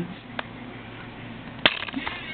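Plastic DVD case snapping open: a faint click about half a second in, then one sharp click near the end followed by a quick rattle of small clicks.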